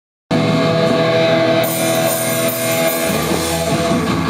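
A live hardcore punk band playing loud distorted electric guitar and bass over drums. Cymbals start crashing about a second and a half in.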